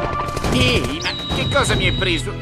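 Cartoon sound effects: a jumble of crashes and bangs, with a high whistling tone that swoops up and is held for most of the second half.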